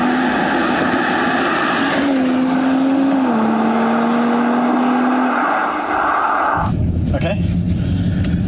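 A car driving along the road outside: a steady engine note over road and wind noise, dropping in pitch about three seconds in and fading soon after. The sound cuts off suddenly near the end to the low drone inside a car's cabin.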